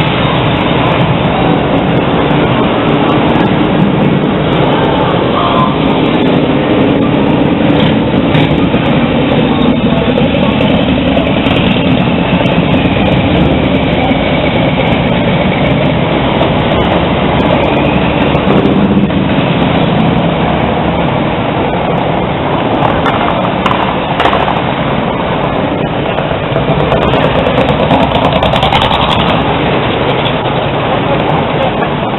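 Loud, steady street noise of vehicle traffic and engines, with voices mixed in.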